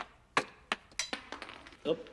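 A run of sharp clicks and taps on a hard concrete floor, like a small hard object dropping and bouncing. The first few come about a third of a second apart, then they come quicker and fainter.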